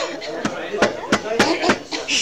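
About five sharp knocks or clicks in quick succession over low talk in a room, heard on a cassette recording.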